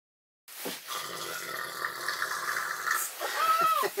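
Sleeping bags rustling as people shift in them, starting abruptly about half a second in, with a short high-pitched vocal squeal that rises and falls near the end.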